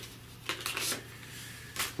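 Paper packaging rustling as a metal tea spoon is handled in its paper sleeve, then one short sharp click near the end.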